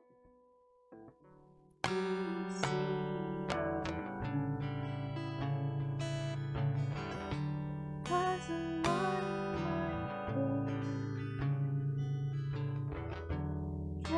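Acoustic guitar starting a song: after a near-silent opening with a few faint notes, chords begin about two seconds in and carry on steadily as picked and strummed accompaniment.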